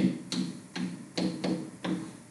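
Pen stylus tapping and writing on a tablet screen: a run of light, sharp taps, about two to three a second.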